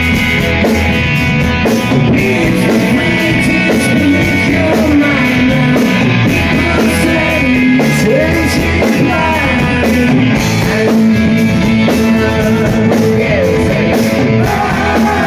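Live rock band playing full-on: electric guitars, bass, drum kit and keyboards, with a lead vocal over them, as heard from the audience.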